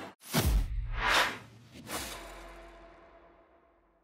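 Logo-animation sound effects: three whooshes about three quarters of a second apart, the first with a deep low boom, then a low rumble fading away.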